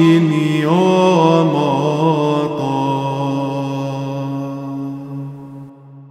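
Male voice singing the closing cadence of a Byzantine chant, the melody gliding and ornamented for a couple of seconds, then settling on a long held final note that fades out near the end.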